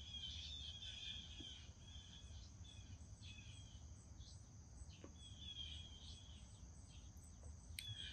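Faint outdoor ambience: a steady high insect drone, with a bird singing several short warbling phrases.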